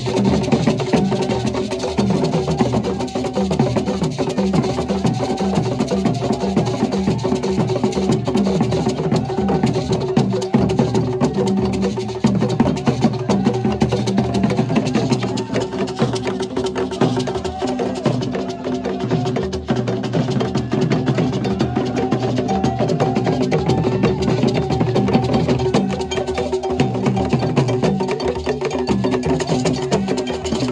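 Drum and percussion music with fast wooden clicks over a steady held tone, playing without a break.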